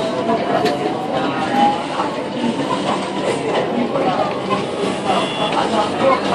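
Running noise inside a CSR Nanjing Puzhen metro car as the train pulls away from a station. A thin rising whine from the traction drive climbs in pitch over the first couple of seconds as the train gathers speed.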